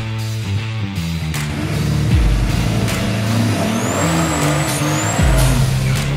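A drag-racing sedan's engine revving up and falling back near the middle. It sits under background rock music with a steady beat and deep bass hits.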